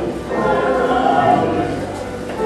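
Many voices singing gospel music together, holding long notes.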